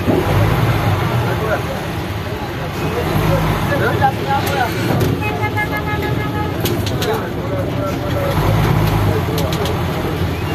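Minibus engine running in slow street traffic, heard from inside the cab, with voices of people around it. About halfway through, a vehicle horn sounds for about a second and a half.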